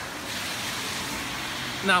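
Steady hiss of rain falling on a wet street.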